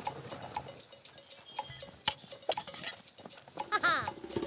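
Light, irregular patter of small footsteps on a dirt path. A short, high, wavering vocal call comes just before the end.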